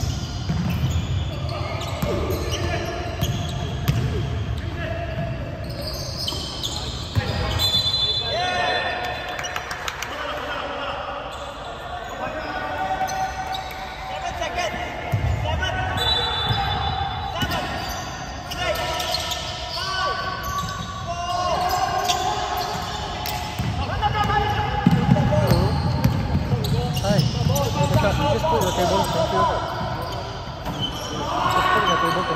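Basketball game in a large gym: a basketball bouncing on the hardwood court, with players' voices calling out now and then.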